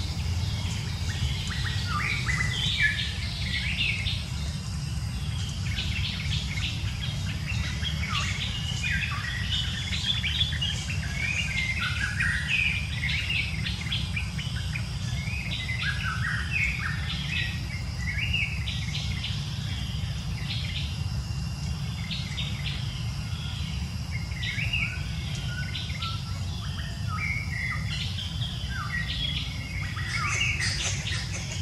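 Many small birds chirping and calling throughout, short quick notes overlapping one another, over a steady low rumble.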